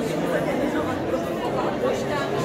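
Many people talking at once indoors: a steady hubbub of overlapping conversation in a crowded room.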